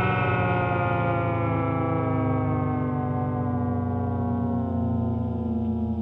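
The closing sustained chord of a rock song, held with distortion while its upper notes slowly sink in pitch over a steady low drone.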